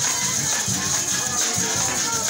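Venezuelan Christmas parranda played live by a folk ensemble: maracas shaking steadily over a drum beating a regular pulse, with violin and cuatro.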